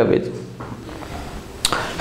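A man's speech ends a question, then a pause of room tone with a single short click near the end, just before he speaks again.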